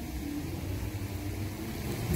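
Steady low background rumble with a faint steady hum and no distinct events.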